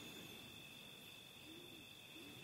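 Near silence: a faint steady high-pitched tone runs on, and a few faint short low calls come and go, about one near the start and two in the second half.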